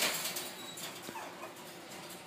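Pomeranian puppy giving a brief, faint whimper about a second in, after a short scuffing noise at the start.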